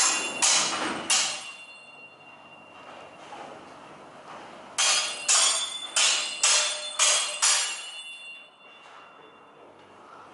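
Longsword blades clashing, each strike ringing briefly: three clashes at the start, then six in quick succession about five seconds in.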